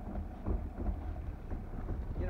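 Wind buffeting a body-worn camera's microphone: a steady, fluttering low rumble.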